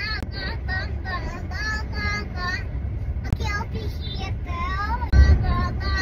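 A four-year-old child chanting "mom" over and over in a high, sing-song voice, several times a second, over the steady low rumble of a car's cabin. The rumble grows louder about five seconds in.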